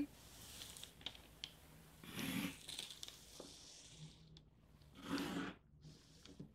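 Faint pencil scratching and a plastic set square sliding over tracing paper, with soft paper rustles about two and five seconds in and a few small clicks.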